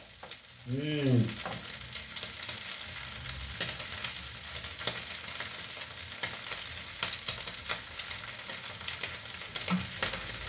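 Minced meat frying in a pan on the stove: a steady sizzle dotted with small crackles. A man hums one short note about a second in.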